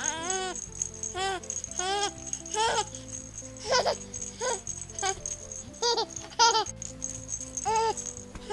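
A toy rattle being shaken in short, repeated shakes over background music.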